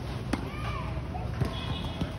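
Two sharp tennis-ball impacts about a second apart during rally practice on a clay court.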